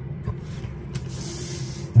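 A tablet being slid across a sheet of paper on a desk: a short hissing rub about a second in, over a steady low hum.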